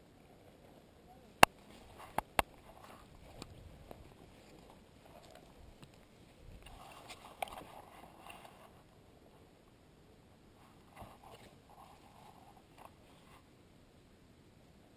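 Paintball marker firing three sharp shots: a single loud one about a second and a half in, then two more in quick succession just after two seconds.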